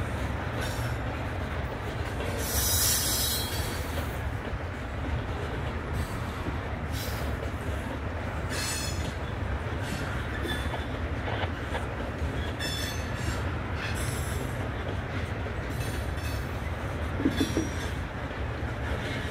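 Norfolk Southern freight train's covered hopper cars rolling past with a steady rumble, the wheels giving short high-pitched squeals now and then, the longest lasting about a second, about three seconds in.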